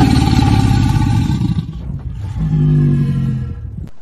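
Loud roaring whoosh sound effect with a deep rumble, easing off about two seconds in, then swelling again before it dies away just before the end.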